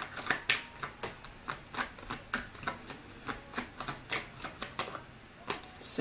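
A tarot deck being shuffled by hand: a quick, irregular run of card clicks and slaps, about four a second, with a short lull near the end.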